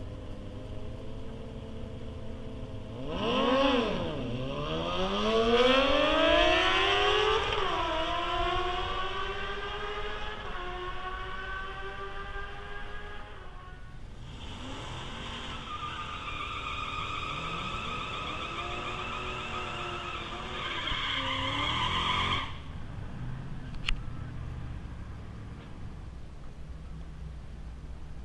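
A drag racer launches off the line about three seconds in and accelerates away down the strip, engine pitch climbing with a gear change and fading into the distance. Then a second engine is held at steady high revs for about eight seconds and cuts off abruptly, as a car does a burnout.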